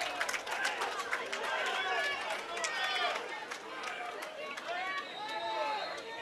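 Distant shouting of players and onlookers on a lacrosse field during play, many voices calling out in short bursts, with scattered sharp clacks.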